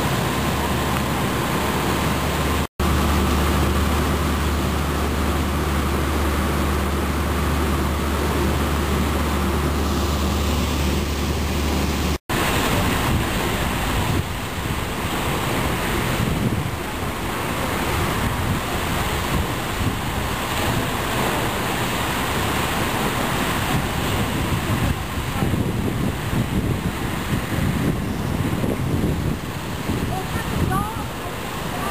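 Water jetting from a broken fire hydrant in a tall column and splashing down, a steady rushing noise throughout. For the first twelve seconds a low engine hum sits under it; the sound drops out for an instant twice.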